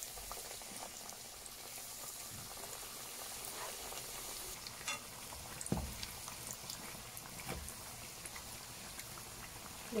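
Square dough pockets deep-frying in hot oil: a steady sizzle and crackle of bubbling oil. A couple of soft knocks come around the middle.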